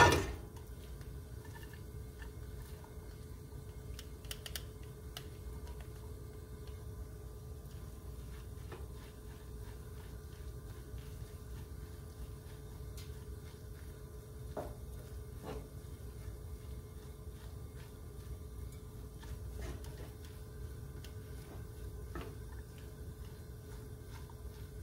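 Grated zucchini cooking in butter in a nonstick frying pan: a faint steady sizzle under a low hum, with a few soft taps as a silicone spatula stirs it.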